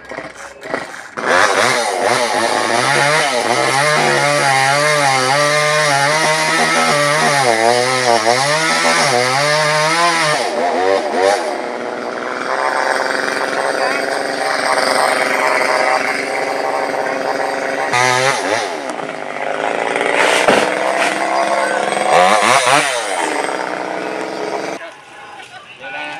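Chainsaw engine running at high revs as it cuts through a dead coconut palm trunk, its pitch sagging and recovering as the chain bites. Later it revs up and down a few times, with a sharp knock partway through, and cuts off shortly before the end.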